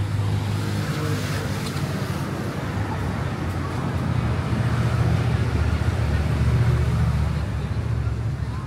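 Street traffic: a steady low rumble of vehicle engines, growing a little louder about halfway through.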